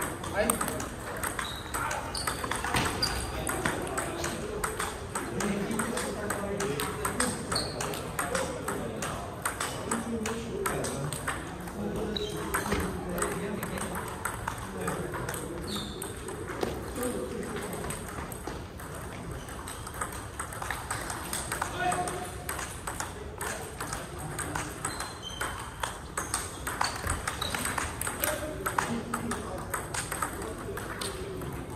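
Table tennis rallies: the ball clicking off paddles and tabletops in quick back-and-forth exchanges, with more clicks from several tables in play at once across a large hall, and voices murmuring in the background.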